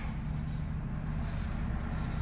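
2011 Chrysler Town & Country's V6 engine idling steadily, heard as a low, even hum with a steady tone.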